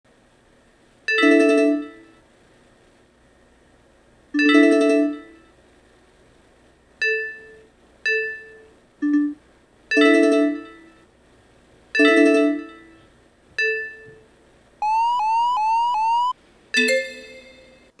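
Electronic alert chimes from GlobalQuake earthquake-monitoring software, signalling a detected quake: about eight ringing chimes a second or two apart, then four quick rising tones about 15 seconds in, and one more chime near the end.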